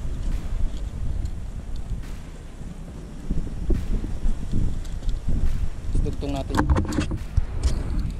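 Wind buffeting the microphone, a low rumble throughout, with a cluster of small clicks and knocks about six to seven seconds in as a popper lure and its snap are handled.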